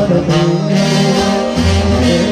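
Sinaloan banda playing live, a brass section of trumpets and trombones holding the melody in chords, with a deep bass note coming in near the end.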